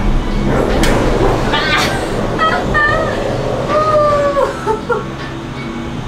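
Background music with a woman's wordless excited exclamations: short rising and falling calls, then a longer held 'whoa' that drops off about four seconds in. A single sharp clunk sounds just under a second in.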